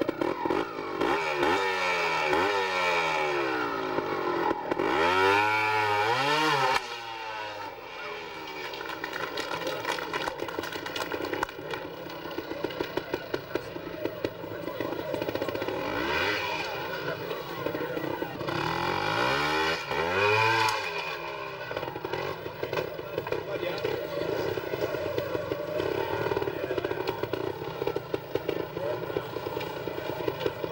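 Beta two-stroke trials motorcycle engine ticking over with repeated throttle blips, the revs rising and falling in sweeping bursts, mostly in the first few seconds and again about two-thirds of the way through.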